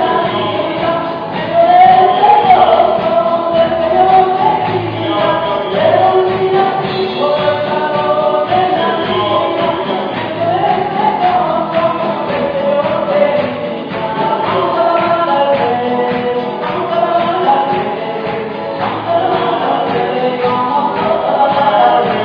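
Live gospel praise song: voices singing together over acoustic guitar, electric guitar and drums, with a steady beat.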